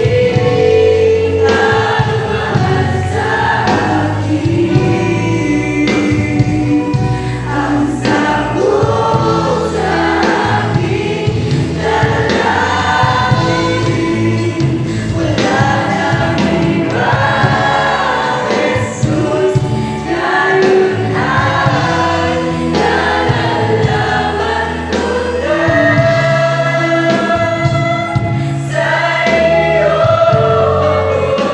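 Mixed youth choir singing a gospel song in parts, over steady instrumental accompaniment with held bass notes.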